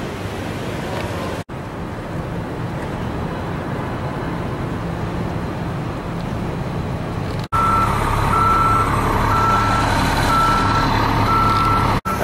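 Steady street traffic hum. After a brief break about seven and a half seconds in, a vehicle's reversing alarm beeps on one steady tone a little over once a second, over the hum of an engine.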